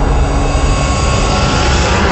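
Logo-intro sound effect: a loud, steady low rumble with a hiss on top, like a jet engine.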